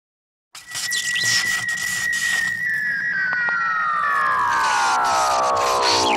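Synthesized intro sound effect: a steady high tone over a crackling hiss starts suddenly, then from about halfway sinks into a long falling glide of several tones together.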